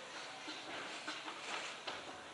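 Quiet hall room tone with several faint, scattered clicks.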